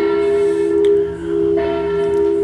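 Background music of steady held notes, the same sustained tones that run on under the narration, dipping briefly just past the middle before carrying on.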